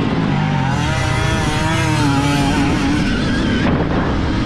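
Stark Varg electric motocross bike being ridden on a dirt track: a motor and drivetrain whine that wavers up and down with the throttle, over steady wind and tyre noise. The whine fades near the end.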